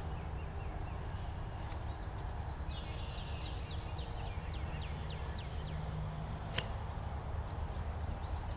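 A practice swing with an iron: one sharp click about two-thirds of the way in as the clubhead brushes the turf. Under it a steady low outdoor rumble, and a bird sings a quick run of short falling chirps in the middle.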